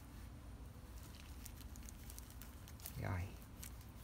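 Faint crackling and rustling of hands firming loose potting soil around a succulent cutting's stem, with scattered light ticks from about a second in.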